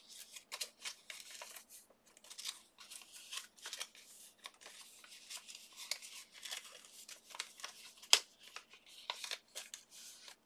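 Die-cut paper envelope being folded and creased by hand: quiet, crisp paper rustling and crackling in many short bursts, with one sharp click about eight seconds in.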